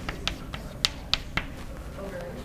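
Chalk tapping and clicking on a blackboard as an equation is written: about six sharp, irregular taps, the loudest a little under a second in.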